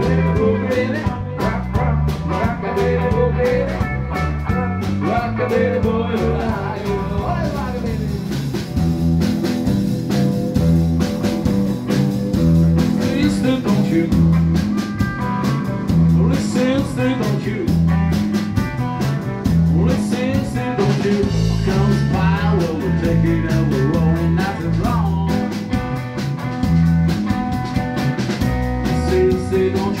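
Live rock and roll band playing an instrumental stretch: electric guitars over bass and drum kit, with a steady pulsing bass line.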